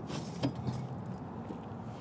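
Faint metallic clicks from the Can-Am Ryker's adjustable footpeg as it is pulled up and slid into a new position by hand: a couple of light clicks early on, then quiet handling noise.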